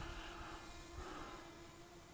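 Very faint, steady hum of a Walkera Runner 250 racing quadcopter's motors and propellers in flight, dropping away about halfway through.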